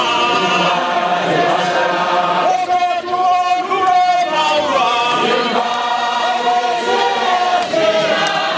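A large congregation singing together in chorus, many voices holding long notes.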